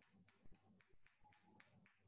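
Near silence, with faint regular clicking at about four clicks a second.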